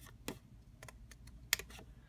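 Scissors snipping a notch out of kraft cardstock: a few short, sharp snips, the loudest about one and a half seconds in.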